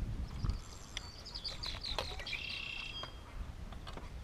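Small birds chirping, a quick run of high chirps and a held high note from about one to three seconds in, after a brief low rumble of handling or water at the start.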